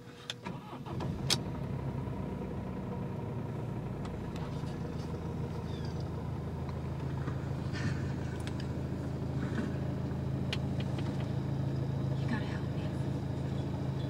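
Mercedes-Benz C200 CDI's four-cylinder diesel engine started with a brief crank about a second in, then idling steadily, heard from inside the cabin.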